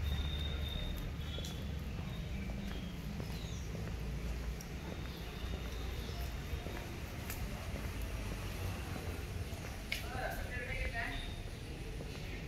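A steady low outdoor rumble with soft footsteps on wet stone paving, and faint distant voices about ten seconds in.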